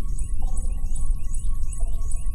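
Instrumental song intro: a deep sustained bass and held chords, with a fast twinkling figure high above.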